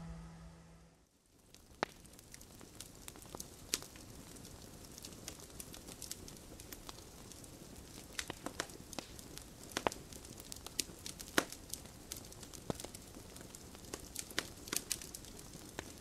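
The tail of the closing music fades out in the first second, leaving a faint steady hiss scattered with irregular crackles and clicks.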